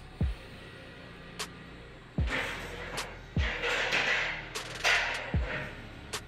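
Music with a beat: deep kick-drum thumps that drop in pitch, light high clicks, and stretches of hiss swelling through the middle.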